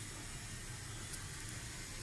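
Steady low background hiss with a low rumble underneath, and one faint tick about a second in.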